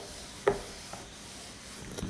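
Handheld eraser wiping marker off a whiteboard: one firm stroke about half a second in, then a fainter one.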